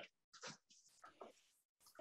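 Near silence, broken only by a few faint, brief sounds in the first second or so.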